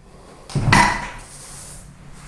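A single hard clunk about half a second in as the Quantum Edge 3 Stretto power chair bumps into the wall, dying away within about half a second.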